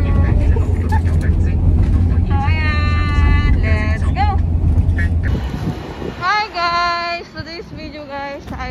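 Low, steady road and engine rumble inside a moving taxi's cabin, with a woman's voice holding long high notes over it. About five seconds in the rumble cuts out, and more long held vocal notes follow over quieter street sound.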